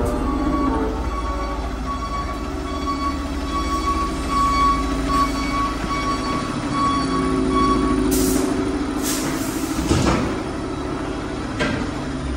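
Fire truck's diesel engine running as the truck drives slowly into the station bay, with a high beep repeating about twice a second for the first eight seconds. A few short hisses of air follow near the end.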